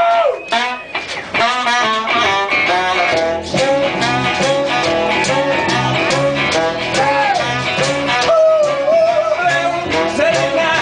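Live band playing a bluesy, rock-and-roll number with a steady percussive beat, a bass line and a melody line on top; it fills out after about a second.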